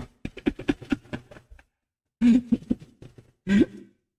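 A man coughing and clearing his throat. A quick run of short bursts comes in the first second and a half, then two louder coughs about two and three and a half seconds in.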